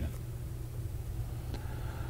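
Room tone: a steady low hum with a faint tick about one and a half seconds in.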